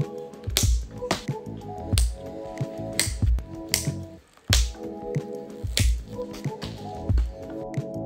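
Background music with a steady beat: low kick-drum thumps and sharp claps over sustained chords, dropping out briefly about four seconds in.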